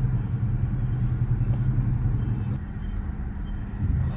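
A low rumble, like a motor vehicle's engine, that drops away about two and a half seconds in, over a faint steady low hum.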